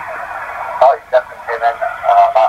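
A 20-metre amateur radio transceiver's speaker carrying a distant station's voice through steady static, narrow and tinny. The signal is readable, reported as 5 by 5.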